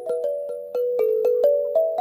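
Marble stone slabs of a lithophone struck one after another with a mallet, about four strikes a second. Each strike rings out as a clear, bell-like note, and the notes step up and down in a simple tune.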